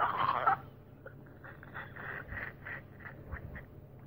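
A loud nasal, voice-like call that stops about half a second in, followed by a faint, rapid run of short duck-like calls, about five a second, that stops shortly before the end.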